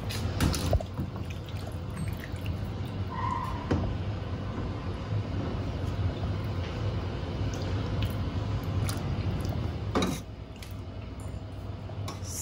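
Orecchiette in tomato sauce sizzling and bubbling in a hot enamelled pan while a wooden spoon stirs and scrapes through it. There are a few clicks in the first second, and a sharp knock about ten seconds in, after which the sound drops.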